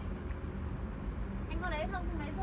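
Steady low motor hum, with a person's voice starting about three-quarters of the way through.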